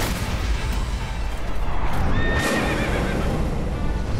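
Cartoon magic-effect sounds: a sustained low rumble with a rushing whoosh, and a thin rising tone a little past halfway.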